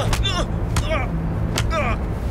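Fight sounds of a beating: about three punches landing, each followed by a man's short falling grunt or groan, over a low steady hum.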